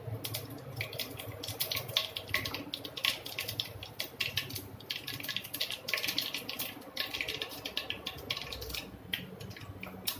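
Seeds spluttering and crackling in hot oil in a non-stick kadhai as the tempering cooks: a dense run of irregular small pops and clicks over a faint low hum.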